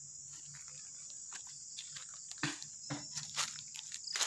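A steady, high-pitched chorus of insects, with a few footsteps crunching on dry leaf litter in the second half.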